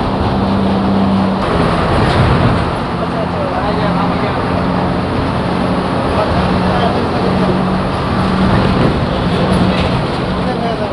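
Steady engine drone and road noise of a bus at highway speed, heard from inside its cab.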